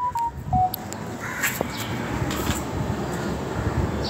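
A phone notification tone: a short run of electronic beeps stepping in pitch. Then steady background noise with a couple of short harsh calls.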